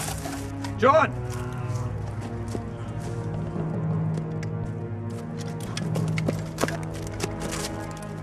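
Sustained film-score music under irregular crackling and snapping of dry leaves and twigs, as from movement through brush, with a short voiced cry about a second in.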